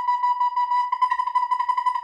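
Recorder played with very fast tonguing on one high note: a rapid run of short repeated notes, the tongue stopping and restarting the air many times a second without a breath.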